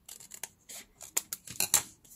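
Scissors snipping through folded paper, a quick run of short cuts with the last few the loudest.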